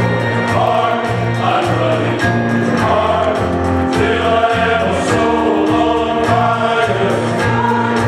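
Mixed church choir of men and women singing a gospel song in harmony, with instrumental accompaniment carrying a low bass line.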